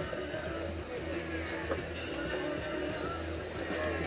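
Steady wind and water noise of a sailboat sailing heeled in strong wind, with a low continuous rumble and faint voices underneath.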